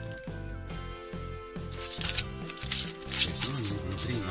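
Crinkling of a plastic antistatic bag holding a hard drive as it is handled and turned over in the hand, with two louder crackles, about two seconds in and again near the end, over background music.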